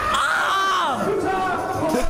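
Young men shouting and cheering over each other, one yelling a drawn-out "yeah!" into a microphone that falls in pitch.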